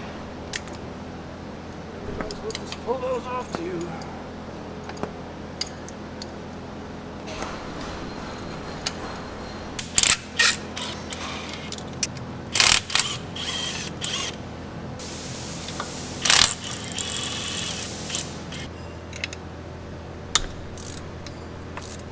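Hand tools working on a truck engine while the spark plug wires and exhaust manifold are taken off: ratchet clicking and scattered metal clicks, with a few loud sharp clanks in the middle.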